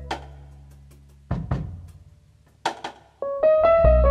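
Instrumental band passage: piano chords ring out and die away, leaving a near-quiet gap before a low note about a second in. Two sharp drum and cymbal hits from a brush and stick come just before three seconds, then the piano comes back in with fresh chords near the end.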